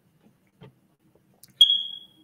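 Near silence, then about one and a half seconds in a single high-pitched electronic beep that starts with a click and fades out over about half a second.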